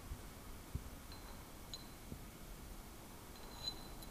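A few faint, sharp clicks of steel parts of a CUSCO type-RS mechanical limited-slip differential being handled and fitted back together by hand, over low room tone.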